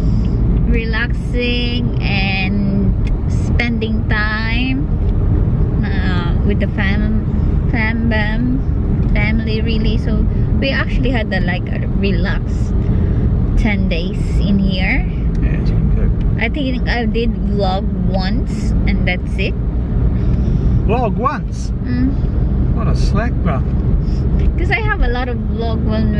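Car cabin road and engine noise while driving, a steady low rumble, with a person talking over it.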